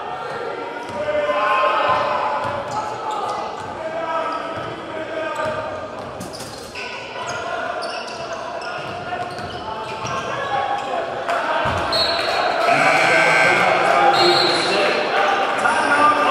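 Basketball bouncing on a hardwood court amid crowd and bench voices echoing in a large gym; the voices swell louder in the last few seconds.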